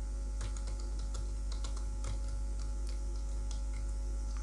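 Computer keyboard typing: a run of irregular keystroke clicks as a word is typed out, over a steady low electrical hum.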